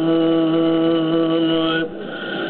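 A man's voice holding one long, steady sung note in a Kurdish religious qasida, which breaks off near the end.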